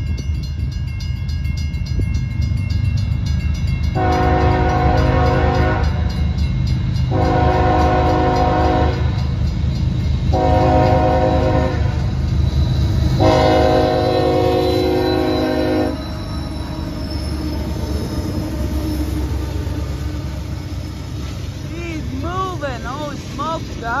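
CSX freight locomotive sounding its horn for a grade crossing: four loud blasts, the first and last the longest, over the steady low rumble of the approaching train.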